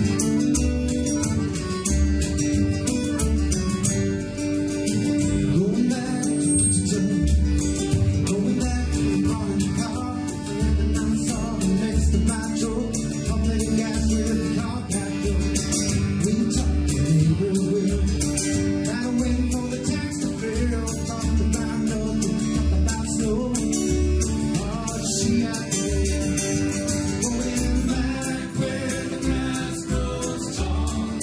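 Folk band playing live: acoustic guitar strumming over a steady bodhrán beat, with button accordion and upright bass.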